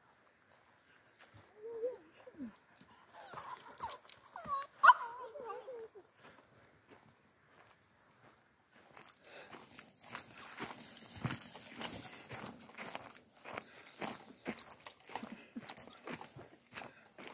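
A dog whining and yelping for a few seconds in short calls that bend up and down in pitch, with a sharp yelp about five seconds in. Then comes a long run of footsteps on a dirt trail.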